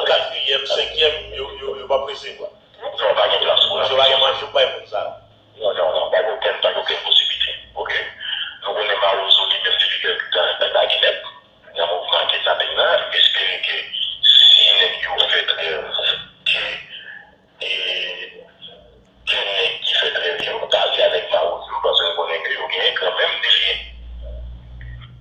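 Speech in bursts separated by short pauses, thin and tinny, with no bass or treble, like audio re-recorded from a phone video.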